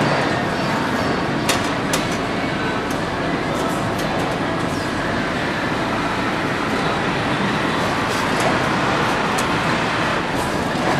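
Steady machinery noise on a tractor assembly line while a rubber track belt is drawn around the undercarriage of a Caterpillar Challenger track tractor, with a few sharp clicks along the way.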